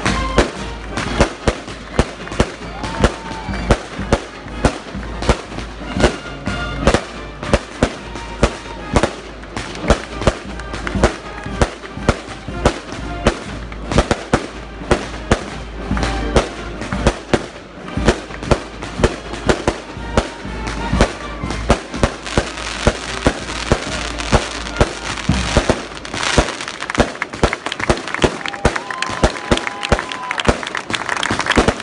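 A rapid, irregular string of firecrackers banging, about two or three reports a second, over a band playing music.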